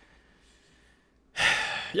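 Near silence for over a second, then a man's loud breath into a close microphone, lasting about half a second, just before he speaks again.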